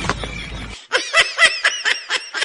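A rapid snickering laugh, a run of short high 'hee' notes at about five a second, starting about a second in just after the background sound cuts off abruptly.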